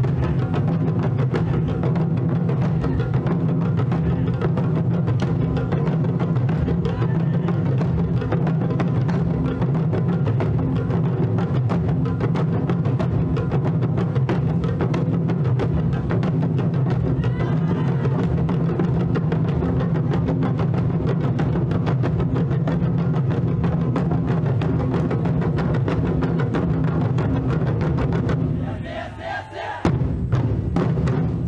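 Festival drumming: rapid, dense drum strikes over a steady low hum. It falls away briefly near the end, then picks up again.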